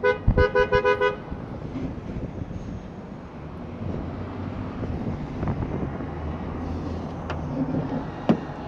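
A two-tone horn gives a rapid series of about five short toots in the first second, then a steady low rumble of background noise.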